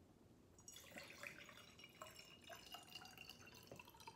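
Water poured from a plastic pitcher into a glass mason jar, a faint trickle with small splashes that starts just under a second in.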